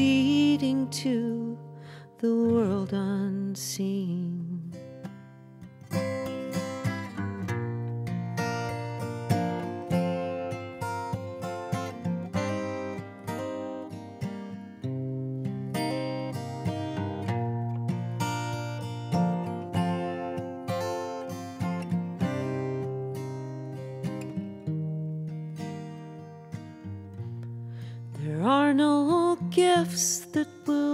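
Steel-string acoustic guitar played solo in an instrumental passage: picked notes and ringing chords. A woman's singing voice is heard briefly at the start and comes back in near the end.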